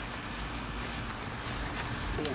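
Handling noise and rustling from a handheld camera being carried across grass, with a low rumble underneath and a few soft ticks near the end.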